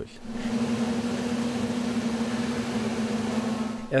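Sewer-cleaning truck running its pump to flush the tunnel's drain lines at high pressure: a steady machine hum with one constant low tone, fading in within the first half second.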